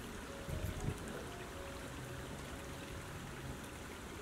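Shallow creek flowing steadily over stones, with soft background music holding long sustained notes underneath.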